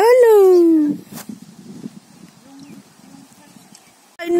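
A young child's voice: one loud, high-pitched call lasting under a second, rising briefly and then sliding down in pitch. A faint click follows.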